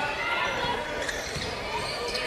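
A basketball being dribbled on a hardwood court, with the hall's background noise.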